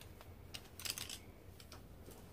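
A few faint, quick clicks and taps, bunched together about halfway through, with a couple more shortly after.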